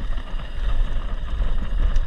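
Wind buffeting the microphone of a camera riding on a descending mountain bike, over a steady low rumble of tyres rolling on a dirt trail.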